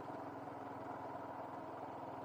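Motorcycle engine running steadily while the bike is ridden at an even pace, a low, even hum that holds the same pitch throughout.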